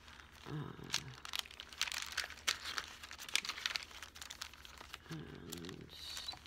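Pages of a thick journaling Bible being flipped through by hand: a quick run of paper flicks and rustles.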